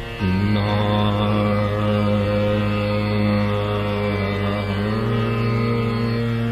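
Hindustani classical alaap in Raag Darbari Kanhra: a male voice enters about a quarter second in and holds a long low note over a steady tanpura drone, then moves to another sustained note near the end.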